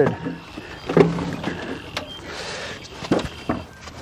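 Split firewood and pallet wood being moved by hand: a few separate wooden knocks and clatters about a second apart, with some scraping in between.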